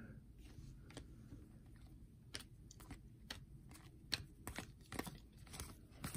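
Faint, irregular clicks and rustles of a stack of Panini Prizm basketball cards being flipped through by hand, the clicks coming more often after the first couple of seconds.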